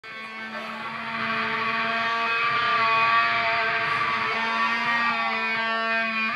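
Live rock band music opening on electric guitar: held, ringing notes that swell in over the first two seconds and then sustain at a steady level.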